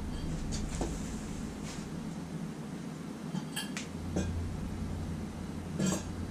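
A few light metal clinks and taps of bolts and tools being handled, scattered at irregular intervals over a steady low hum.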